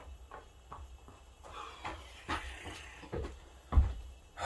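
Running footsteps crunching on a gravel driveway, about two a second, growing louder as the runner comes closer, then a heavier thump near the end as he reaches the cabin doorway.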